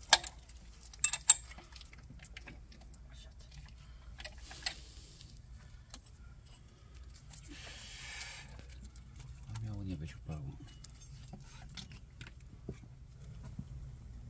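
Sharp metallic clinks of hand tools and parts in an engine bay, the loudest right at the start and a pair about a second in, followed by quieter rustling and handling noise as the timing belt is worked free.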